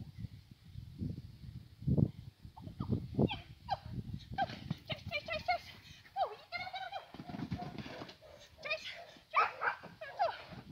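A dog barking and yipping excitedly in short, high calls, several a second, from about three seconds in. Low thumps come in the first seconds.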